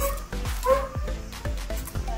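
Background music with a steady beat, and a Doberman barking once, a little under a second in.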